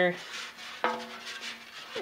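Metal paint can knocked once about a second in, then ringing with a steady metallic tone that fades slowly.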